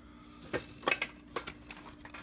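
A few light clicks and knocks of kitchen containers and lids being handled on a counter, over a faint steady hum.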